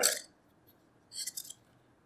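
A plastic spinning-wheel bobbin sliding onto the flyer shaft, heard as a brief, faint scrape with a few small clicks about a second in.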